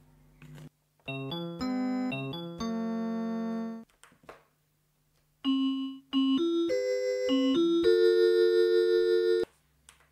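Synth keyboard notes from a DIY cardboard MIDI instrument's on-board Teensy synth, its 12-bit DAC line out played through small computer speakers. Two short phrases of notes and chords, about a second in and again past the middle, the second ending in a held chord that stops just before the end, over a faint steady low hum.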